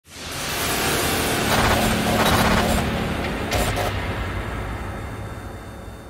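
Intro logo sound effect: a dense rushing noise with a low hum swells in at once, with short crackling bursts through the middle, then slowly fades away.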